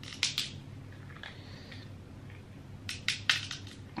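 King crab leg shell cracking and crunching as it is broken open by hand to get at the meat: a couple of sharp cracks near the start and a quick cluster of cracks about three seconds in.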